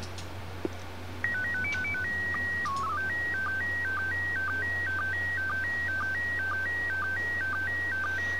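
Slow-scan TV (SSTV) audio signal played from an 8 kHz WAV file: about a second in, a single whistle-like tone starts, steps quickly through a short run of pitches, holds, dips low once as the mode header is sent, then settles into a two-pitch pattern with short low blips repeating about twice a second as the image lines are sent and decoded.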